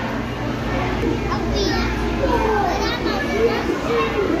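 Children's high-pitched voices chattering and calling, starting about a second in, over a steady background hum of a busy hall.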